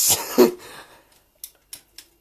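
A brief throaty vocal burst with a sharp breathy exhale, twice in the first half second, then quiet with three faint short clicks near the end.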